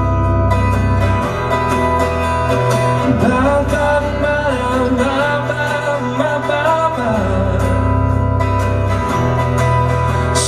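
Live rock band performance: a man singing over strummed acoustic guitar, electric guitars and drums, with a low bass line whose notes change every couple of seconds.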